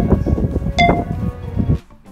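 iPhone iMovie voiceover countdown: short bell-like chime ticks, one a second, one about a second in, over a busy background that drops away just before the end.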